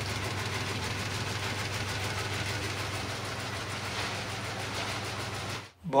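Motor-driven peanut processing machine running, with a steady hum under the continuous rattle of shelled peanut kernels pouring from its chute into a woven basket. The sound cuts off suddenly near the end.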